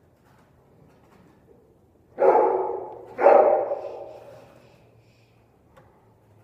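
A dog barking twice, about a second apart, each bark trailing off in a long echo through a large indoor riding arena.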